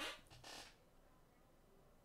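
Near silence: faint room tone, with two faint, short hiss-like sounds within the first second.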